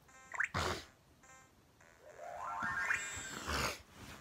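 Electronic toy sound effects: a short rising chirp, then a longer rising tone, with a brief laugh near the start.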